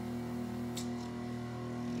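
Diamond-tip microdermabrasion machine's vacuum pump humming steadily while the suction wand works over the skin, with a brief soft hiss about a second in.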